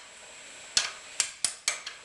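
A steel hammer striking a punch against a steering stem bearing race in a motorcycle frame's steering head, four sharp metallic strikes with short ringing, starting about three-quarters of a second in. The race has had a weld bead run on it to give the punch an edge to drive it out by.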